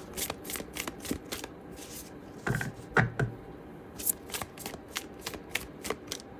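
A deck of tarot cards being shuffled by hand: cards slide and flick against each other as they are passed from hand to hand. The rustle is soft and irregular, with a couple of louder slaps about two and a half and three seconds in.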